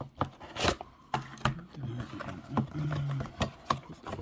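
Cardboard packaging being handled: a collectible figure's window box sliding and knocking against the cardboard shipping box it was jammed into, with a series of short scrapes and taps, the loudest less than a second in.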